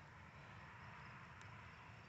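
Near silence: faint steady outdoor background noise.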